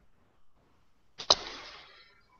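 A sudden rush of hiss-like noise about a second in, starting sharply and fading away over most of a second.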